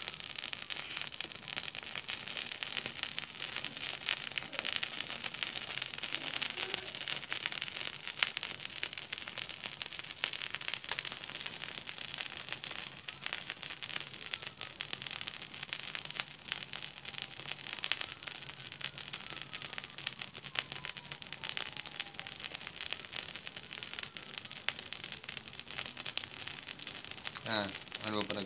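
Small homemade cotton fire starters burning with open flames, giving a steady hiss and dense, fine crackling.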